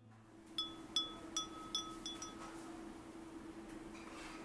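A small metal bell or chime rings about six times in quick succession, the strikes coming a little faster towards the end and the ringing dying away after two to three seconds, over a faint steady low hum.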